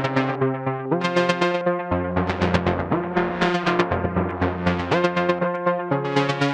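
Eurorack modular synthesizer patch playing a slow sequence of short plucked notes, about four a second, over a low note that changes pitch about every second. One oscillator frequency-modulates another, and LFOs slowly shift the tone.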